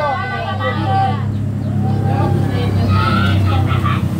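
A motor vehicle engine running steadily with a low, even hum, with people's voices over it.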